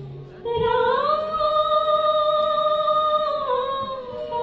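A solo high voice singing one long held note that begins about half a second in, slides up about a second in, holds steady, and dips slightly near the end.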